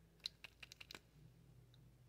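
A quick run of about six small, sharp plastic clicks and taps within under a second, then one faint click later: handling a liquid lip product's tube and applicator wand. Otherwise near silence.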